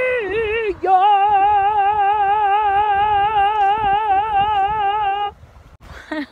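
A woman singing: a held note breaks off just after the start, then a lower note is held with a steady vibrato from about a second in until it stops near the end.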